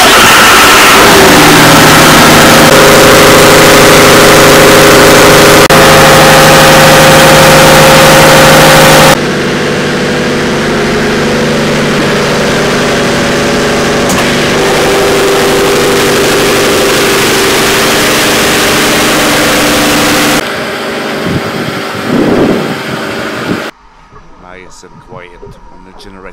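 Diesel generator engine running loud and steady in a ship's engine room, with a constant hum of several tones; it powers the electric propulsion motors in a diesel-electric setup. The sound drops in level about nine seconds in and again about twenty seconds in, then cuts off just before the end.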